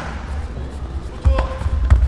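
Taekwondo sparring on a foam mat: sharp thuds of kicks and feet striking, one at the start and two louder ones in the second half, over hall rumble and voices.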